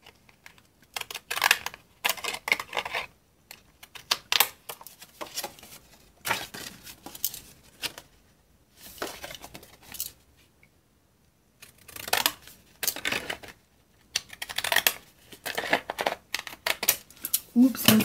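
Craft scissors snipping through patterned paper in runs of short cuts with brief pauses, the paper rustling as it is handled. The scissors are decorative-edge scissors cutting a wavy edge.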